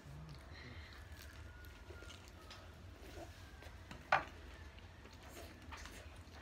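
Faint sounds of people eating fried chicken with their hands: quiet chewing and small mouth noises, with one short sharp click about four seconds in, over a low hum.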